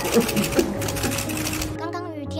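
Camera shutters of the surrounding press firing in rapid, continuous bursts, a fast, even clicking, over a woman's short sobbing cry at the start. The clicking stops abruptly near the end as soft background music takes over.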